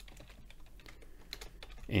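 Typing on a computer keyboard: a quick, irregular run of faint keystroke clicks.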